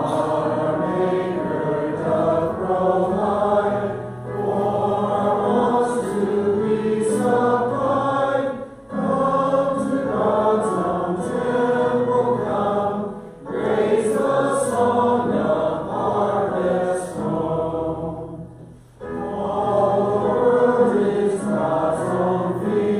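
Voices singing a worship song together, led by a small band with acoustic guitar and keyboard. The singing comes in phrases with short breaks between lines every four to five seconds.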